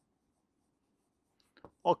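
Writing on a board, mostly very quiet: faint room hum with a couple of short, light stroke sounds near the end. A man's voice starts just at the close.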